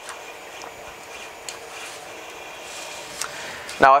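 Lid of a 3D-printed plastic filament spool being twisted onto its base by hand: faint plastic rubbing with a few light clicks.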